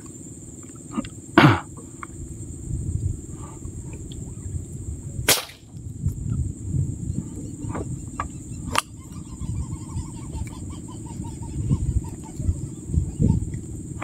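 A rubber-powered fishing spear gun shot at a gourami in the water, with a few sharp snaps and knocks of the gun, the loudest about a second and a half in. A steady high insect buzz runs underneath.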